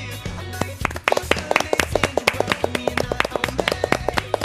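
A few people clapping by hand over closing theme music. The clapping comes in about a second in as quick, uneven claps louder than the music.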